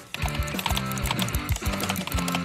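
Computer keyboard keys clicking rapidly in an even run of several strokes a second as someone types, one key being a replacement key made with a 3D pen. Background music plays underneath.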